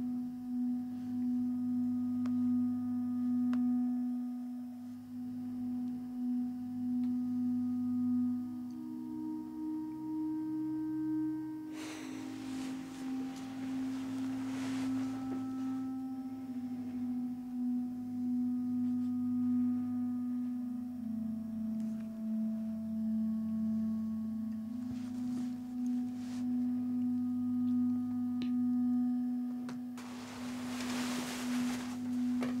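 A low sustained drone holding one note, with fainter held tones above it that change pitch slowly. A soft rushing swell rises about twelve seconds in, and fainter swells come later.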